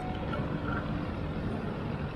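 Steady highway traffic noise: the rumble of passing trucks and cars, with a faint steady engine hum through the first second and a half.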